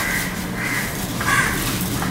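A bird calling three times, short calls a little over half a second apart.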